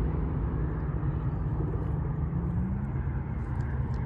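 Small gas engine of a mini bike idling steadily while the bike is held still by its parking brake, its pitch edging up slightly about two and a half seconds in.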